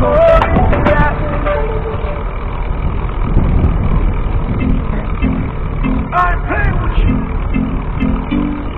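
Driving noise inside a car, a steady low rumble of tyres and engine, with music from the car's stereo. A song trails off in the first second or so, and about halfway through a new track begins with repeated guitar notes and a brief vocal snippet.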